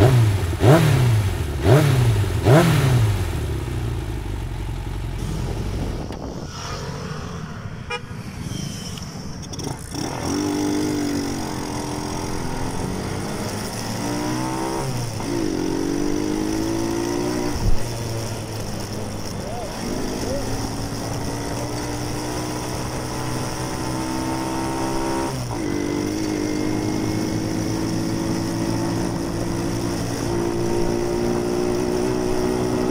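Small 110 cc motorcycle engine revved in three quick blips, then, after a lull, accelerating with its pitch climbing and dropping back twice at gear changes before settling into a steady cruise.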